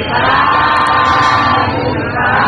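Group of voices chanting in unison in a Buddhist recitation, one long drawn-out syllable held steady that breaks off near the end.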